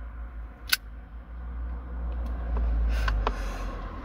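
A man smoking a cigarette during a pause, with a sharp click about three-quarters of a second in and a few faint ticks. A low rumble grows louder in the second half, and a brief hiss comes near the end, fitting an exhale.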